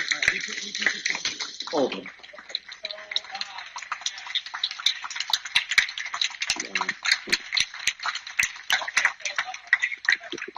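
Audience applauding, a dense patter of many hands clapping, with a few voices among the claps.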